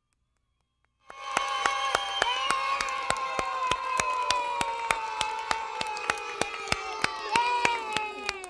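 A group of young children cheering and clapping, their long shouts held and slowly falling in pitch over fast, uneven hand claps. It starts suddenly about a second in, after silence.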